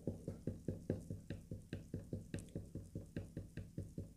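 Rapid, light taps on the board under a layer of iron filings, about six a second in an even rhythm, shaking the filings into line with the magnetic field between two bar magnets.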